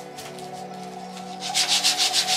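Hand sanding of a wooden sculpture piece: quick back-and-forth rubbing strokes, several a second, that start about one and a half seconds in and grow louder. Background music plays throughout.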